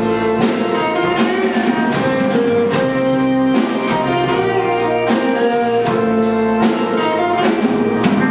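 Live band playing an instrumental intro: a drum kit keeps a steady beat, about two hits a second, under held keyboard chords.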